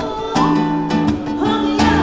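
Acoustic guitar strummed in a steady rhythm, a strum about every three-quarters of a second, with a voice singing over it.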